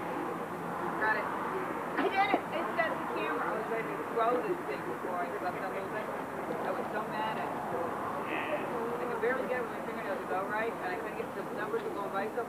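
Indistinct chatter of several people talking at once, with no clear words standing out.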